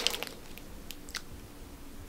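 A few faint, short clicks over quiet room tone: a cluster right at the start and two more about a second in.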